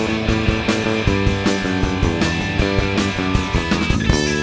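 Rock band playing live, an instrumental passage of electric guitar, bass guitar and drums with no singing, the drums hitting on a steady beat.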